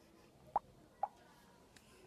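Two short pops about half a second apart against quiet room tone.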